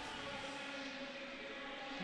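Faint, steady background noise of a spectator crowd in an indoor swimming arena.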